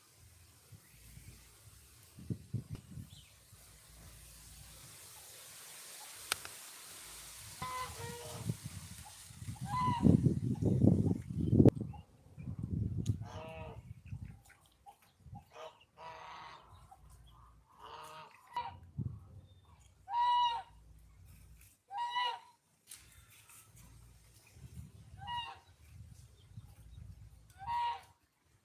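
Poultry calling: short, separate calls every second or few, more frequent in the second half. Under them is a low rumble with knocks, loudest around ten seconds in.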